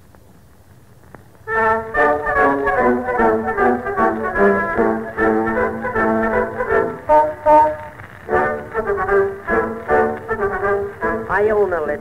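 Background music: a brass-led band plays an instrumental passage of a comic song, coming in about a second and a half in after a faint start. A singing voice begins near the end.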